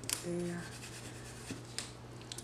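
Sharp clicks and crackles of a paper planner sticker being pressed onto a planner page and peeled off its backing sheet. The loudest click comes right at the start, with two more about a second and a half in. A brief hum of a woman's voice comes just after the first click.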